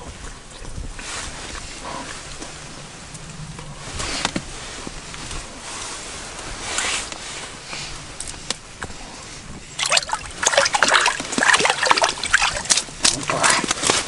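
Water sloshing and splashing in an ice-fishing hole, starting about ten seconds in as a quick, busy run of splashes: a hooked fish thrashing at the surface as it is drawn up on the line.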